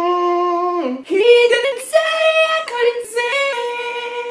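A man singing wordless, high-pitched held notes: one long note that ends about a second in, then a string of higher held notes that step up and down.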